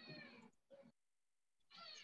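Near silence with two faint, short pitched cries sliding down in pitch, one at the start and one near the end.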